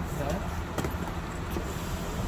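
Coach bus engine idling with a steady low rumble, with a couple of sharp knocks as bags are loaded into its luggage hold and people talking in the background.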